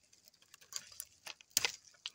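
A hand breaking off and handling a thin dry twig among branches right next to the phone's microphone: a few scattered small clicks and scratches, the loudest about a second and a half in.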